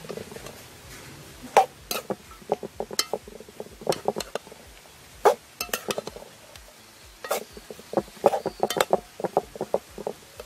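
A metal spoon clinking and scraping against the side of a metal cooking pot as it stirs chopped vegetables, in irregular clusters of sharp knocks.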